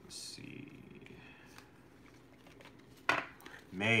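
Tarot cards being handled on a tabletop: a short sliding hiss at the start and a sharp tap about three seconds in, followed by a man's voice starting just before the end.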